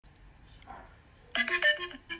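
A short electronic melody of clear, steady notes stepping from one pitch to the next, like a ringtone, starts suddenly about one and a half seconds in.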